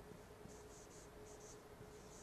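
Faint pen strokes on a board as a word is handwritten: a string of short, soft scratchy squeaks, over a thin steady hum.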